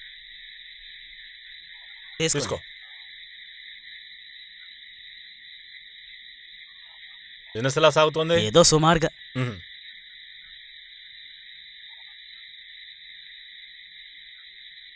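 Steady high-pitched night-time chirring of insects, an even drone with no pauses. A man's voice cuts in briefly about eight seconds in, with a short sound about two seconds in.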